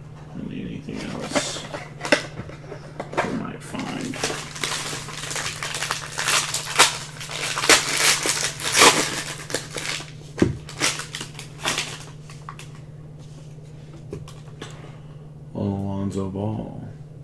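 A trading-card pack's shiny wrapper crinkling and tearing as it is slid out of its box and opened by hand, in irregular bursts for about twelve seconds and then quieter. A steady low hum runs underneath.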